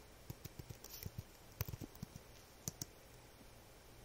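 Faint computer keyboard typing: a run of quick, uneven key clicks over the first three seconds or so, then stopping.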